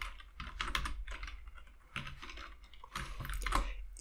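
Typing on a computer keyboard: a string of unevenly spaced key clicks.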